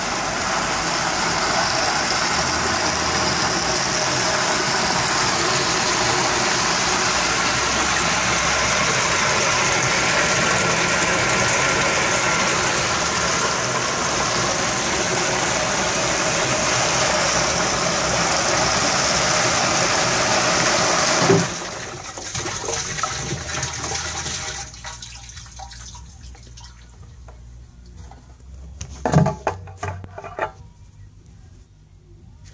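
Pump-fed water jet spraying up inside an inverted plastic 5-gallon water jug, a loud steady rush of water against the jug walls. It cuts off abruptly about two-thirds of the way through, a quieter rush trails off for a few seconds, and a few knocks come near the end.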